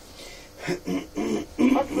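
Speech: a person talking over a radio or phone line after a short pause.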